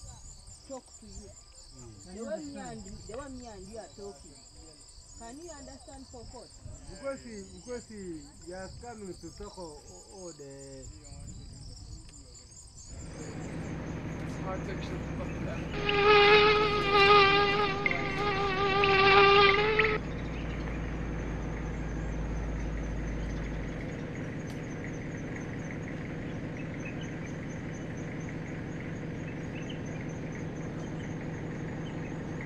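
Insects calling steadily with a high, continuous shrill. About halfway through, an insect buzzes close by for about four seconds in two stretches, a loud whine that is the loudest sound here.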